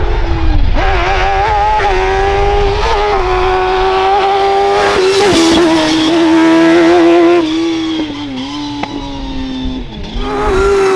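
Fuga 1000 slalom prototype's engine revving hard, its pitch dipping and climbing again several times.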